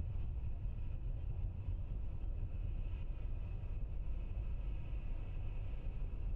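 A steady low rumble with a faint hiss above it, even throughout, with no distinct events.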